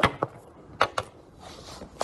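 A phone being handled and set down, giving sharp knocks against the microphone: two right at the start and two more just under a second in.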